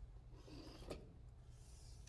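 Near silence, with faint rubbing of plastic trim being handled and one light click a little before the one-second mark.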